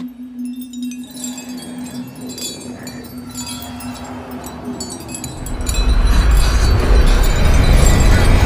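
Trailer score sound design: shimmering chime-like high tones over a held low note. About five and a half seconds in, a deep low rumble swells up and stays loud.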